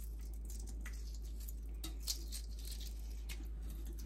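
Shell of a hard-boiled egg crackling in small, irregular clicks as it is peeled off by hand, over a steady low hum.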